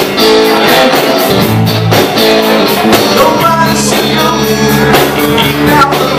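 Live blues-rock band playing loud: electric guitars, bass guitar and a drum kit, with a singer's voice over the top.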